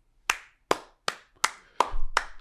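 One person clapping slowly: five sharp, evenly spaced claps, a little over two a second, each dying away quickly.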